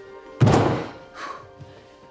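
A single heavy thud about half a second in, fading quickly, over quiet background music.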